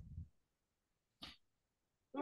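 Near silence on an online call: a brief low murmur at the very start, then one short faint noise a little over a second in.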